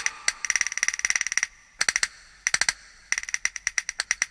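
Jingling hand percussion, small bells or jingles, played alone in quick clusters of sharp strokes with short breaks between them, as part of a Hindi film song's instrumental introduction.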